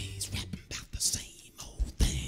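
A brief stop in the band's playing: a singer's breathy, whispered sounds into a handheld microphone, with a few short knocks.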